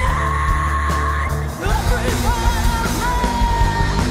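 Punk rock band playing live, with electric bass and drums. A long held high note runs over it. The heavy low note breaks off about a second and a half in, and the full band comes back in with drums.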